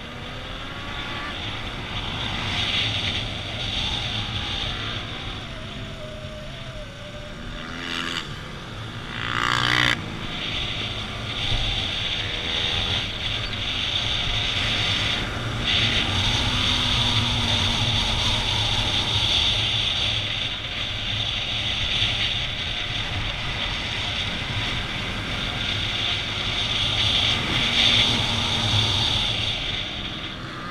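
Motorcycle engine heard from an onboard camera while riding at speed, with a steady rush of wind over the microphone. About eight to ten seconds in, the engine revs up in a rising whine.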